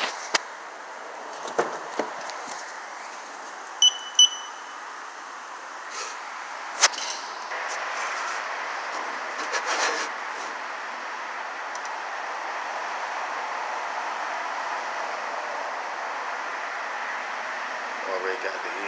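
Two quick, high electronic beeps about four seconds in, among a few sharp clicks and knocks. From about seven seconds on there is a steady hiss.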